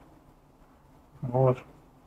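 A man's voice giving one short hummed "mm" about a second in, over faint room quiet.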